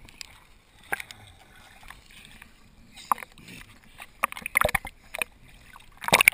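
Muffled water sounds heard from a camera held just under the lake surface: quiet sloshing with a few sharp knocks of water on the camera's housing. A cluster of small splashes comes between about four and five seconds in as it nears the surface.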